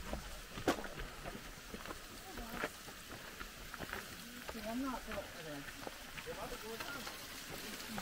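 Footsteps walking down a jungle trail, a few sharp steps standing out over a steady faint hiss, with faint distant voices in the middle.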